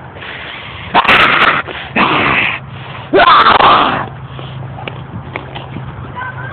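A chihuahua giving three harsh, noisy bursts of bark or snort, each under a second long and about a second apart, while it goes after a bunny.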